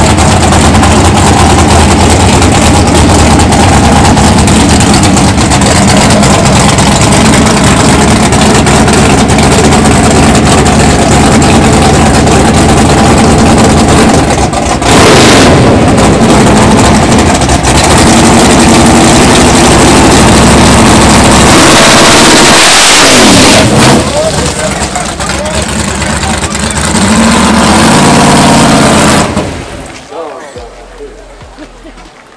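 The big engine of a Chevrolet Malibu drag car runs loud and lumpy, revving up and down in blips. A hissing rush passes a little past the middle, and the engine revs up once more near the end.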